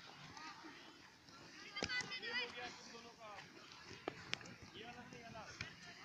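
Faint, distant voices of children calling and chattering, with a louder call about two seconds in. A few sharp knocks are scattered through it.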